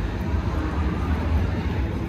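Steady low rumble of outdoor city ambience, with no distinct event standing out.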